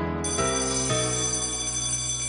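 Electric school bell ringing steadily, starting a moment in.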